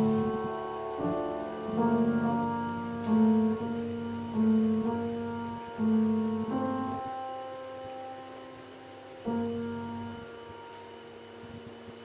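Grand piano played solo in a slow phrase: single chords struck one to two seconds apart, each left to ring and fade. Past the middle one chord is held for a couple of seconds before the next is struck.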